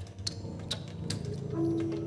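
Live jazz: a double bass holding low notes under scattered light percussive ticks, with a louder held higher note coming in about a second and a half in.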